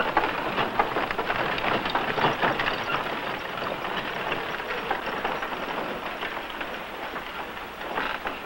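Horse-drawn wagon rolling away: a dense, continuous clatter of hooves and rattling wooden-spoked wheels, growing a little quieter toward the end.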